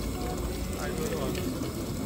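Water trickling from a plate of soaked rice into a pot of water, with faint voices in the background.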